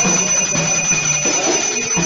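A puja hand bell rung continuously, giving a steady high ringing over devotional singing, as in an aarti.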